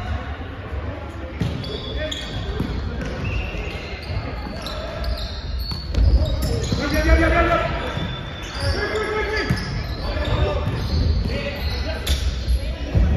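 Volleyball rally in a large, echoing sports hall: sharp thuds of the ball being hit, the loudest about halfway through, with players shouting calls to each other around the same time.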